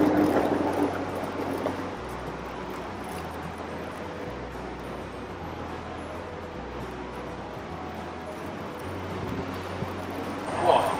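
Soft background music with a low bass note that changes every couple of seconds, over a steady hiss of outdoor noise.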